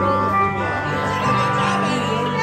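Live band music with held instrument tones over a steady bass line.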